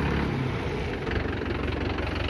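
Mahindra 575 DI tractor's four-cylinder diesel engine idling steadily.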